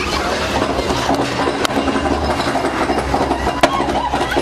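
Roller coaster train rattling along its track, with a few sharp clicks.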